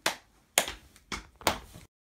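Four hand claps spread over about a second and a half, the sound then cutting off abruptly.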